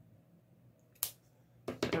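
Scissors snipping through a strip of nylon headband fabric: one sharp snip about a second in, with a few smaller clicks of the blades near the end.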